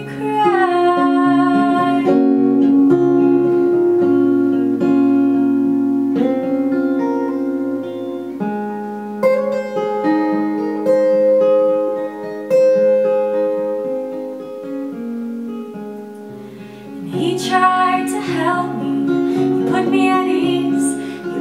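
Steel-string acoustic guitar playing an instrumental passage of held, ringing notes. A woman's voice sings a falling line at the start and comes back in near the end.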